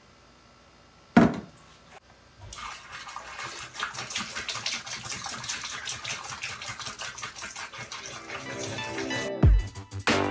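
Degreaser glugging out of a plastic gallon jug and splashing into a plastic tote of liquid, starting about two and a half seconds in, after a single sharp knock about a second in. Background music comes in near the end, with deep beats.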